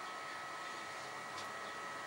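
Steady, even hiss of running equipment, with faint steady high whine tones through it.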